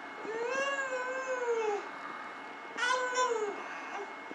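A baby's drawn-out vocal calls: one long, gently wavering call of about a second and a half, then a shorter one near the three-second mark.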